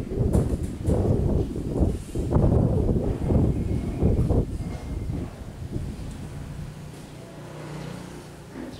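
Wind buffeting the microphone: an irregular low rumble in gusts, loudest in the first four seconds and dying down about halfway through.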